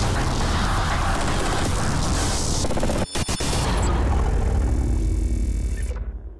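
Cinematic logo sting: booming sound-effect music with a brief stuttering break about three seconds in, then a low rumble fading out near the end.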